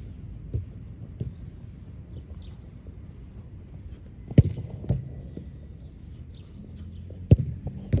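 Sharp thuds of a football being struck during goalkeeper shot-stopping drills: two loud strikes about three seconds apart, with lighter knocks before and between them, over a low steady outdoor rumble.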